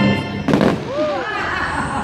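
Orchestral fireworks-show music breaks off and a single sharp firework burst goes off about half a second in, followed by a short rising-and-falling voice.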